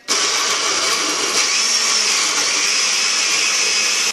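Push-button countertop blender switched on and running at a steady speed, blending milk with pieces of strawberry, apple and banana into a milkshake. The motor starts abruptly and runs loud and even throughout.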